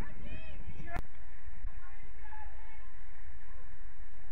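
Open-air field sound from a soccer match: a few distant, indistinct shouted voices over a steady low rumble, with a single sharp click about a second in.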